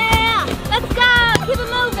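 Excited drawn-out shouts of "oh" from volleyball players, three of them, over background music.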